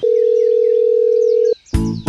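A steady telephone tone, one plain pitch held for about a second and a half, then cut off suddenly, with faint high chirps behind it. Rhythmic background music starts near the end.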